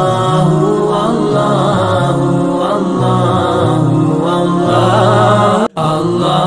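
Devotional dhikr chant: voices repeating "Allah" over and over in a continuous melodic line, cutting out suddenly for a moment near the end.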